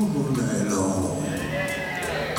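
Live electric blues band playing, with a high note that bends up and down and then a held high note near the end over the band's low rhythm.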